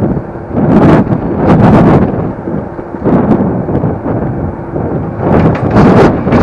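Wind buffeting the microphone of a moving Superpedestrian e-scooter, swelling and dipping in loud gusts, with short clattering knocks as the scooter jolts over the boardwalk.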